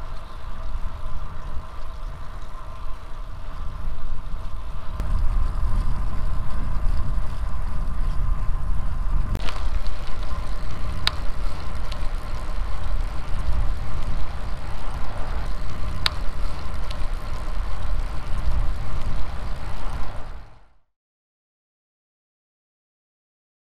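Wind and road noise on the microphone of a camera on a bicycle riding along a tarmac road: a steady low rumble with a faint steady hum and a few sharp clicks. It cuts off to silence near the end.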